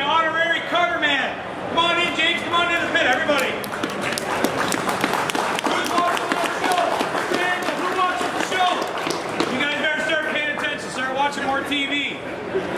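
Men's voices talking, over crowd chatter and scattered clicks and footfalls in a large hall; in the middle stretch the voices blur into general murmur.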